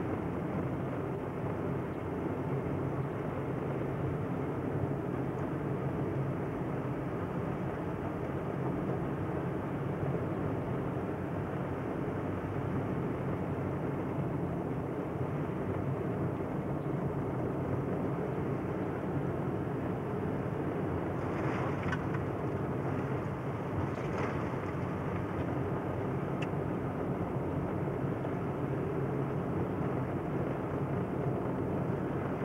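Steady car noise heard from inside the cabin: the engine and the tyres running on a hail-covered road. Two brief rushes of higher noise come about two-thirds of the way through.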